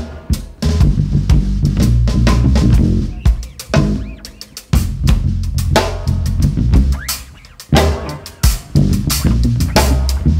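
Live jazz with electric bass and drum kit playing together: a deep, sustained bass line under busy, closely spaced drum strikes and cymbal hits.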